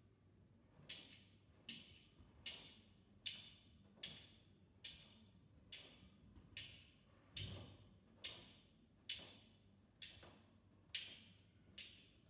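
Handmade sound effect: two wooden-handled objects pressed down onto a folded cloth beside a microphone, giving a quiet, even series of short knocks, about one every 0.8 seconds, some fourteen in all.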